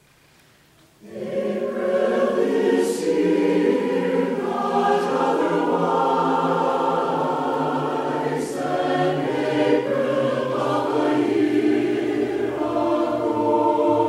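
Mixed choir of men's and women's voices beginning to sing about a second in, in held, shifting chords with crisp consonants.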